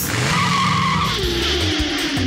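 Race-car sound effect: a tyre screech, then an engine note falling slowly in pitch as it passes, over background music.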